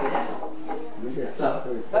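Voices talking in the background; no other clear sound.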